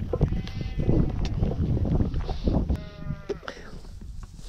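Two sheep bleats: the first, about a second long, starts just after the beginning, and a shorter one comes near three seconds. Footsteps on a dry dirt path and a low wind rumble on the microphone run underneath.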